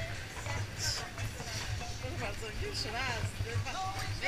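Women's voices laughing and exclaiming without clear words, over a steady low hum.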